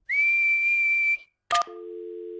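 A cartoon sheep whistling one clear, steady high note for about a second, demonstrating how to whistle. About a second and a half in, a short blip is followed by a steady two-note telephone dial tone.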